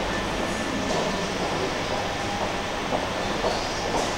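Steady rumbling background noise of a large, hard-surfaced indoor passage, with a few faint knocks in it.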